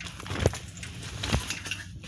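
Handling noise as a bag and a phone are shifted about on a bus seat: light metallic jingling and two short thumps, the second almost a second after the first, over the steady low rumble of the bus.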